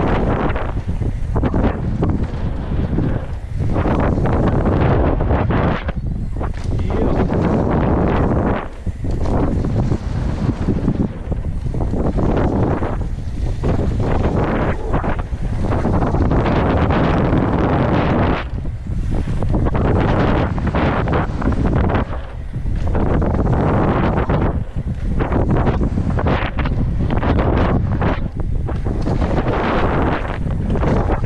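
Loud wind buffeting a helmet camera's microphone as a mountain bike descends a dirt and gravel trail at speed, with the rush of riding noise rising and falling and dipping briefly a few times.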